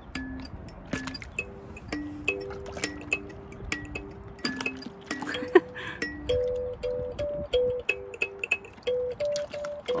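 Background music: a simple melody of short, bell-like notes stepping up and down, over scattered light clicks.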